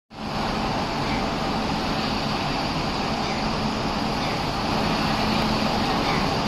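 WAP-7 electric locomotive standing at the platform with its equipment running: a steady hum over an even rushing noise.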